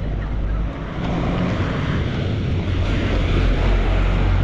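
A bus engine running as the bus approaches and passes close by, getting louder toward the end, over a broad rushing noise of traffic and wind.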